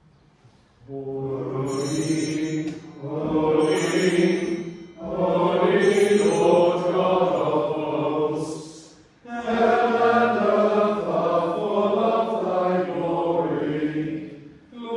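Voices chanting a liturgical text in four phrases, each broken off by a short breath, with the longest phrase near the end.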